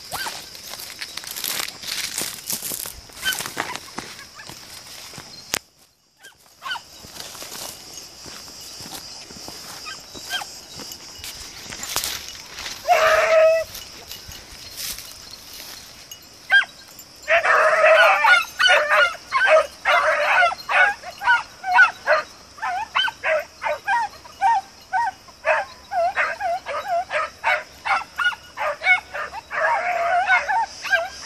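Hunting beagles giving tongue out in the scrub. A single bay comes about 13 seconds in, then from about 17 seconds a dense run of short, quick yelping barks, several a second, the cry of hounds working a scent. Rustling in the brush fills the first part.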